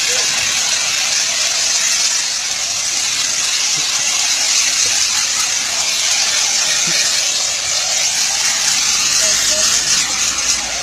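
Car-wash foam sprayer hissing steadily as it coats a person in foam.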